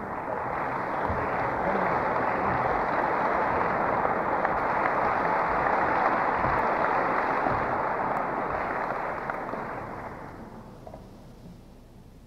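Audience applauding, building over the first second or two, holding steady, then dying away about ten seconds in.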